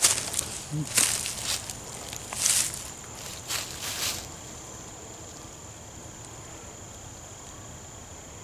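Footsteps crunching through dry leaf litter and twigs, five or so in the first four seconds, then stopping. Under them, a steady high-pitched insect drone.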